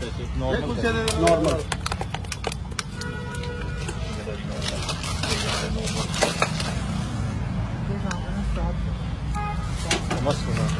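Steel ladle clinking and scraping against metal curry pots and a bowl as food is served, over a steady low street rumble, with a voice briefly at the start.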